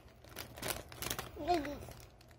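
Candy wrappers rustling with a few light clicks as a child's hand rummages through a cloth bag full of wrapped candy.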